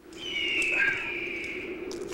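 A bird's long high cry, falling slowly in pitch, over a steady low hum.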